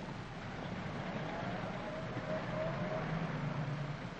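City street traffic: a motor vehicle's engine rumbling past, swelling slightly and then easing off, under the steady hiss of an old optical film soundtrack.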